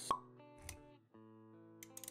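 Animated-intro sound effects over soft background music with held notes. A sharp pop comes just after the start, then a low thud a little after half a second. The music drops out briefly around one second and comes back.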